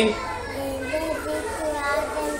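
Quieter children's voices talking in the background.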